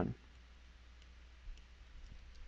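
Faint clicks of a stylus on a pen tablet while a number is handwritten, over quiet room hiss. One small click comes about three-quarters of the way in, with a few softer ticks near the end.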